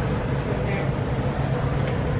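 A steady low hum fills the room, with faint voices in the background.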